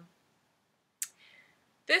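A pause with near silence, broken about a second in by a single short, sharp click, followed by a faint breath in; a woman's voice starts again at the very end.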